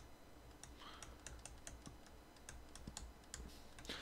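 Faint, irregular small clicks and taps of a stylus on a tablet screen as handwriting is written.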